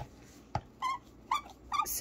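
A domestic cat giving three short meows in quick succession, after two light clicks near the start.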